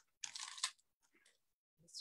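A brief dry rustle, about half a second long, of a photo print being handled and laid on a paper scrapbook page.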